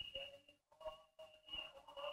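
Faint telephone-line audio: a steady high tone with faint, broken, held voice-like sounds from the caller's end of the line.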